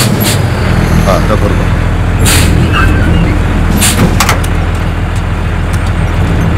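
Engine of an old army truck running with a steady low rumble, with a short hiss about two seconds in and several sharp clicks and knocks.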